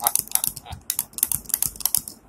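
Handling noise: a rapid, irregular run of clicks and rustles as a toy bird is rubbed and knocked against the camera close to its microphone.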